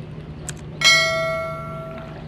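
A small metal bell rings once, struck sharply about a second in, a clear ring fading over about a second; a faint click comes just before it.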